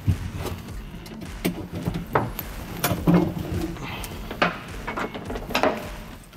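Caps being popped out by hand inside a vehicle canopy's storage compartment: a scattered series of sharp clicks and light knocks.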